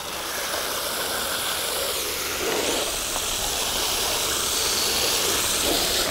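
Garden hose watering wand with a shower head spraying a steady stream of water onto dry compressed peat pellets in plastic seed-starting trays, soaking them so they swell. The spray stops near the end.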